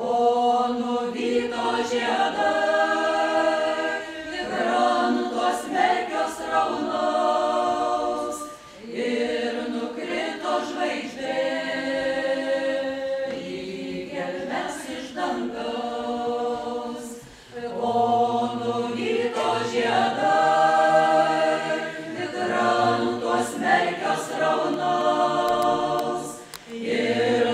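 Mixed folk ensemble of women and men singing a Lithuanian folk song a cappella in several voices, in long phrases with short breaks between them.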